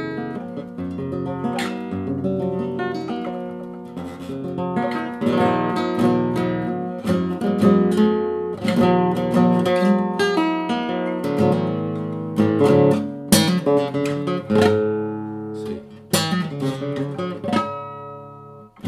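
Solid-wood nylon-string classical guitar in an altered tuning (low to high D A D F# B E), played solo: chords and single notes plucked and left ringing. Two sharp strummed chords stand out, about 13 and 16 seconds in.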